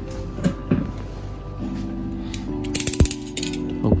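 A knife being used on a cardboard figure box's seal: a few sharp clicks and knocks, with a quick run of ratchet-like clicks about three seconds in. Background music plays under it.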